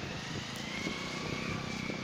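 Small motorcycle engine running as it rides past, a steady hum with a faint high whine rising slightly.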